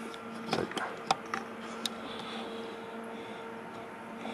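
Steady low hum from the powered-up HP 8510B network analyzer display unit, with a few light clicks in the first two seconds.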